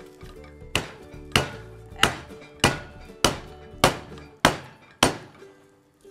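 A stainless steel saucepan's base pounding a cling-film-covered chicken breast on a wooden cutting board: eight even blows, a little under two a second. Each thunk flattens the breast thin enough to roll, like a schnitzel.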